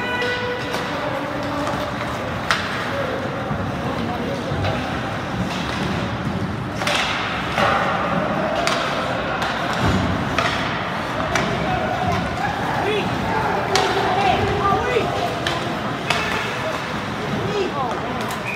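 Ice hockey rink ambience heard from the stands: overlapping spectator voices chattering and calling out, with scattered sharp clacks of sticks and puck. One clack stands out about two and a half seconds in.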